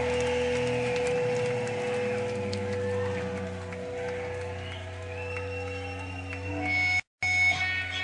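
Live rock band music with long, held notes ringing out. About seven seconds in, the sound cuts out for a moment, and then different held tones carry on.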